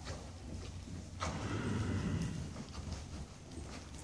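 A horse walking on the sand footing of an indoor arena, its hoofbeats soft, having just come down from canter. A louder noise starts a little over a second in and lasts about a second and a half.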